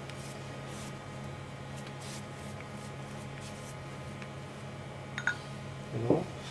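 Soft, faint swishes of a pastry brush spreading egg wash over a proofed yeast-dough loaf, heard over a steady low hum. A light click comes near the end.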